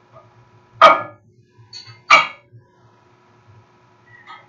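A dog barking twice, loud and short, just over a second apart.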